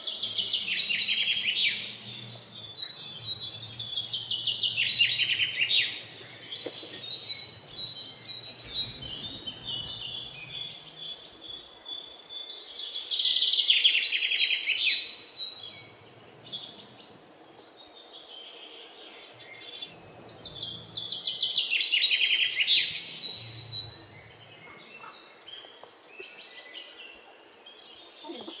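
Birds chirping, rapid high twittering notes coming in several swells a couple of seconds long, the loudest about halfway through, with quieter chirps between.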